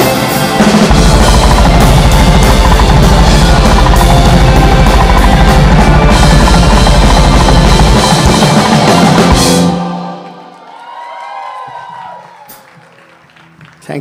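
A live Carnatic progressive rock band playing loudly in a metal style: a drum kit with a rapid, unbroken bass-drum run under electric bass guitar and the rest of the band. The song ends with the band stopping suddenly just before ten seconds in, and the sound then dies away.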